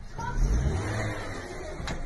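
Small hatchback's engine revving under load as the car, stuck in a snowbank, tries to drive out; the revs swell about half a second in and then slowly ease off. A single sharp click near the end.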